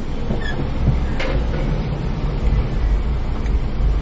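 Low, steady rumble of a 1999 Toyota RAV4's four-cylinder engine and running gear, heard from inside the cabin as the car pulls away from a drive-thru window.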